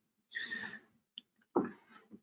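A person's breathy exhale, then a brief hum-like voice sound about a second and a half in.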